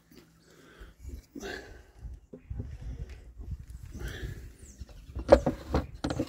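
Handling noises as the plastic slide-out pest tray is drawn from under a Flow Hive and handled, over a low rumble of wind on the microphone. There is a sharp knock about five seconds in.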